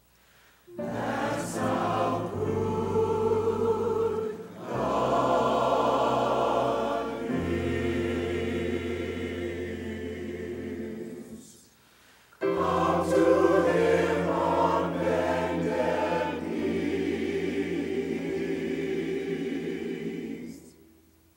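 Gospel choir singing in sustained phrases, with steady low notes underneath. The singing starts about a second in, breaks off for a moment about halfway, then resumes and stops near the end.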